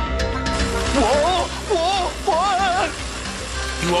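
Cartoon background music, with a loud, wobbling, warbling cry in three or four stretches from about one to three seconds in.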